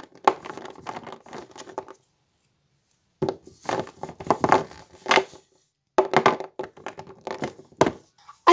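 Wrapped plasticine bars handled and set down on a table: crinkling wrappers and light knocks, in three bursts with short silences between.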